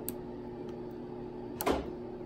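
Plastic DIP switches on a breadboard being flipped with a pen tip: a faint click near the start and one sharp click about a second and a half in, over a steady low hum.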